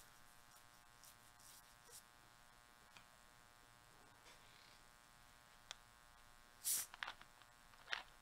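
Near silence with a faint steady electrical buzz. Two short, louder noisy sounds come near the end.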